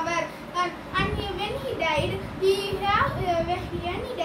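A boy speaking continuously: a child's voice delivering a speech.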